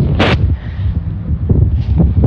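Wind buffeting a camcorder microphone: a heavy, uneven low rumble, with one brief sharp burst of noise about a quarter of a second in.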